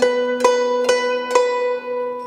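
AI-generated guzheng music: four plucked zither notes in an even pulse about half a second apart, each ringing on.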